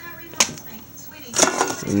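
A single sharp tap about half a second in, as a duct tape wallet is set down on a desk, and a brief rustle of the wallets being handled about a second later, just before a word is spoken.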